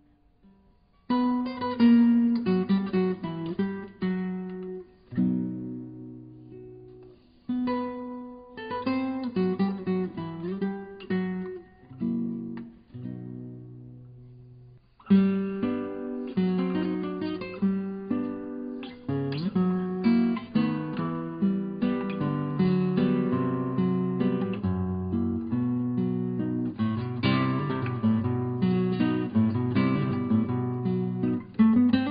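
Background music of acoustic guitar, picked and strummed. It starts about a second in, thins out a little before the middle, and comes back fuller and steadier for the second half.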